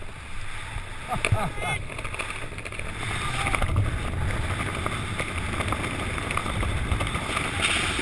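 Steady rush of wind across the microphone of a parachutist descending under an open canopy.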